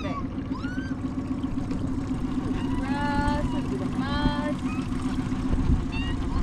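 Small boat's outboard motor running steadily at low trolling speed.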